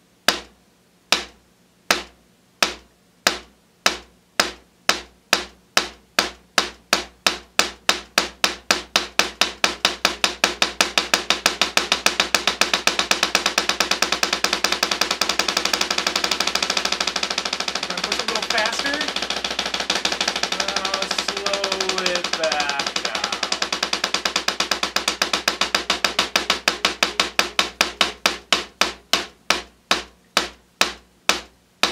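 Wooden drumsticks striking a rubber practice pad set on a snare drum in alternating right-left single strokes: about one stroke a second at first, speeding up into a fast, even single-stroke roll through the middle, then slowing back down to separate strokes near the end.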